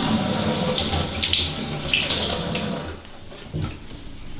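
Kitchen tap running into a sink, a steady rush of water that stops about three seconds in, followed by a brief knock.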